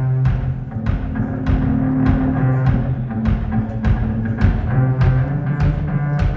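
Live solo acoustic guitar strummed hard over a steady percussive beat of about one and a half strokes a second, with deep sustained bass notes; an instrumental passage without singing.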